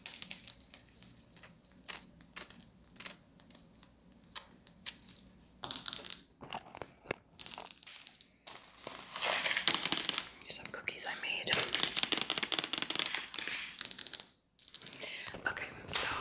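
Long fingernails tapping and scratching on Christmas decorations: small ornaments, artificial pine branches and a glittery white tree skirt. Irregular quick clicks give way, from about nine seconds in, to denser, louder scratching and rustling that stops shortly before the end.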